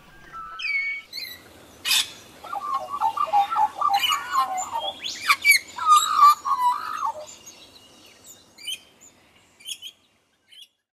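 Birds chirping and calling: quick runs of repeated notes, whistled glides and short squawks, busiest in the middle and thinning out to scattered chirps near the end.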